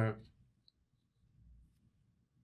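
The tail of a man's spoken word, then near silence with one faint, short click.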